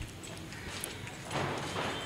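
Faint light knocks and clatter of wooden chairs and a desk being handled and carried, over low outdoor background noise.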